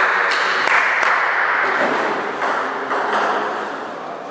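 A table tennis ball clicking sharply several times at uneven intervals as it bounces, over a loud, steady hiss of background noise that eases towards the end.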